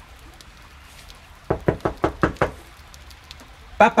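Knocking on a cabin door: a quick run of about six or seven hard raps lasting about a second.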